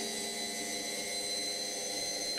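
A steady machine-like hum with a thin, high, constant whine, from the demonstration time machine with its spinning disc.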